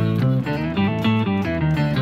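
Electric guitar, a Fender Stratocaster, played through a Boss OC-5 octave pedal with compressor and reverb, giving a deep, bass-like run of single notes an octave down. The sound is much duller and heavier in the lows.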